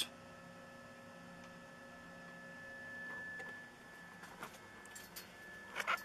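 Faint steady electrical hum with a thin high whine from the solar power electronics (inverter and charge controllers) running in the power shed, with a few light clicks in the last two seconds.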